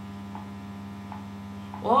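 Steady low electrical mains hum, a buzz with a higher overtone above it. A woman's voice comes in briefly near the end.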